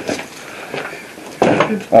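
Low shuffling and handling noise, then a sudden loud clatter of hard objects being knocked or shifted about one and a half seconds in.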